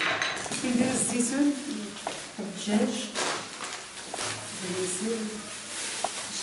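Food-preparation handling at a kitchen counter: plastic bags rustling and bowls and utensils clinking in short, scattered clatters, with voices talking in the background.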